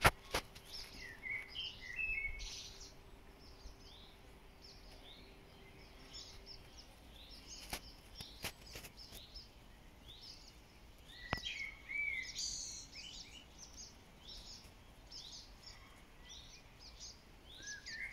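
Swallows calling overhead: short, high twittering chirps and squeaks in loose bursts, busiest near the start and again about two-thirds through, with a few sharp clicks in between.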